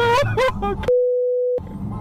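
A person laughing 'ah-ha-ha' over the low rumble of traffic. About a second in, this gives way to a steady mid-pitched beep lasting under a second, with all other sound cut out beneath it, before the rumble returns.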